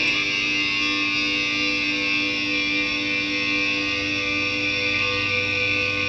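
Electric guitar holding one chord that rings on steadily and hardly fades, with no new strums.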